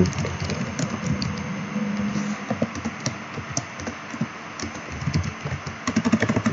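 Computer keyboard being typed on: irregular runs of key clicks as a line of code is entered.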